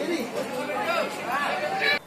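Several people talking at once, their voices overlapping in a loose chatter.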